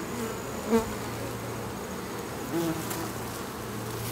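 A colony of honeybees buzzing steadily around an open hive.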